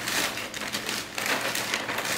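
A hand rummaging in a plastic bag of frozen berries: the bag crinkles and the frozen berries click against one another in a dense, steady crackle.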